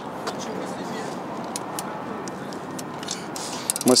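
Steady urban background noise outdoors, with a few faint light clicks from a folded electric fat bike being handled and lifted as it is unfolded.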